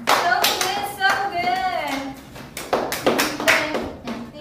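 Several people clapping their hands along in a loose rhythm, with voices chanting between the claps.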